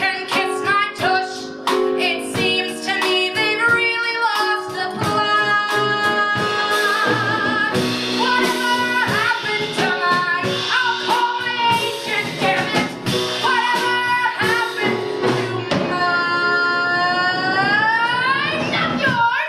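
A woman sings a Broadway show tune live into a handheld microphone, belting over instrumental accompaniment. Near the end she holds one long note that bends upward in pitch.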